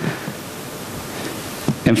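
Steady, even hiss of background noise from the hall's microphone and sound pickup. A man's voice says a word at the very end.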